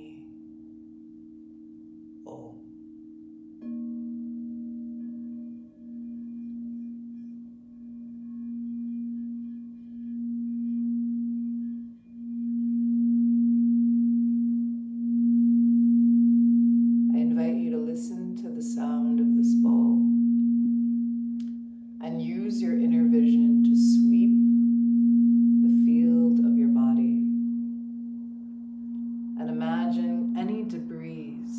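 A singing bowl holds one steady, low tone that gets louder a few seconds in and then swells and fades in long waves. From about halfway through, a woman's voice sings in several phrases over the tone.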